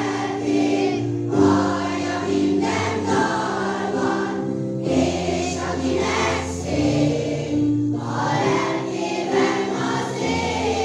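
A large children's choir singing a song together in sustained phrases, with short breaks between the lines.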